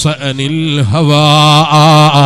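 A man's voice chanting melodically in a sermon, dipping in pitch and then holding one long wavering note from about a second in.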